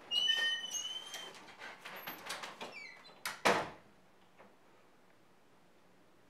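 A glass-paned interior French door being opened, its hinge giving a high, steady squeal for about a second, with a few shorter falling squeaks around two seconds in. About three and a half seconds in there is a single thud as the door shuts, and then little is heard.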